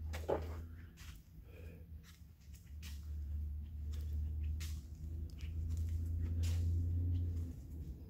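A low steady hum that grows louder in the second half, with scattered light clicks and taps.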